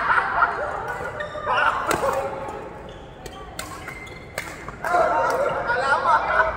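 Voices of badminton players talking, with a few sharp hits of rackets on a shuttlecock around two, three and a half and four and a half seconds in.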